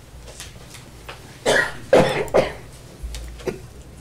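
A person coughing, three coughs in quick succession about a second and a half in, then a smaller one near the end.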